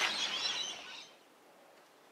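Small birds chirping, cutting off suddenly about a second in.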